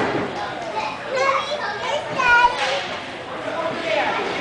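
Young children's voices shouting and chattering indistinctly across an ice rink, with a high-pitched call standing out about two seconds in.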